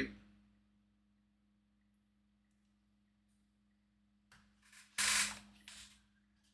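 Near silence: faint room tone with a low steady hum. About five seconds in, a few short hissy noises, the strongest lasting about half a second.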